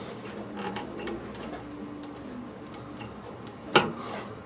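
Faint ticks and handling noise as a wire's push-on connector is worked onto a terminal of an electric fireplace control board, then one sharp click near the end as it seats fully.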